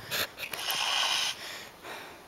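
A person's hard breathing close to the microphone: a short sharp breath near the start, then a long breath out that fades after about a second.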